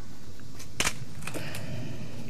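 A sharp double click a little under a second in, then a few fainter clicks, over a steady background hiss.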